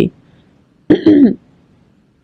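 A woman's voice making one short wordless vocal sound about a second in, with pauses either side.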